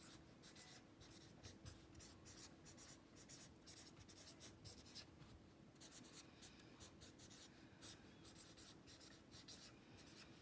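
Pen writing on lined notebook paper: faint, quick scratching strokes as words are written out in handwriting.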